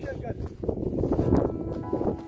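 Strong wind buffeting a phone's built-in microphone in a low rumble. Background music comes in past halfway.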